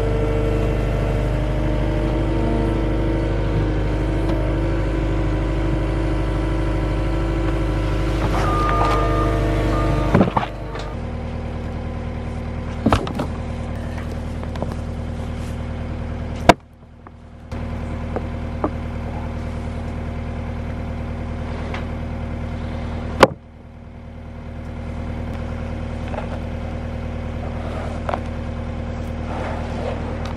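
Cat 259D compact track loader's diesel engine running steadily, louder for about the first ten seconds and then at a lower, even level. The sound is broken twice by sharp clicks and abrupt cuts.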